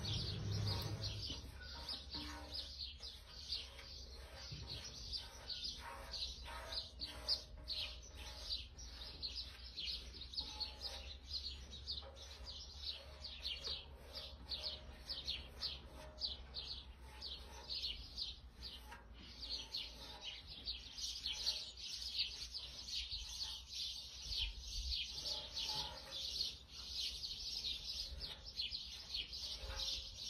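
Birds chirping outdoors in quick, evenly repeated short calls that keep going throughout and grow denser in the second half, over a steady low rumble.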